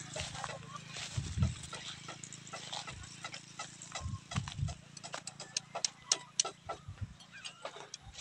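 Footsteps over grassy ground and phone-handling noise: irregular clicks with a few soft low thumps, over a faint steady low hum.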